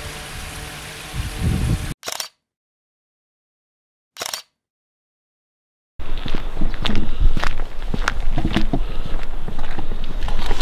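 Footsteps on gravel, a rapid run of crunching steps with camera handling noise, starting about six seconds in after a few seconds of dead silence. The first two seconds hold a quieter steady background with a few faint held tones.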